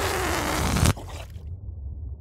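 Cartoon deflation sound effect for a pufferfish losing its air: a loud rushing hiss of escaping air with a thin tone sliding down in pitch, cutting off suddenly about a second in. It marks the punctured fish going flat instead of puffing up.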